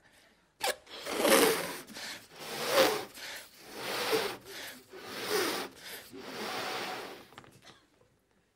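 A man making loud, breathy blowing and gasping sounds, about six surges in a row, roughly one every second and a quarter. They are comic mouth noises for transferring sucked-in air out of his mouth.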